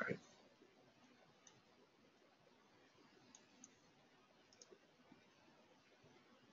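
Near silence with a few faint, separate computer mouse clicks.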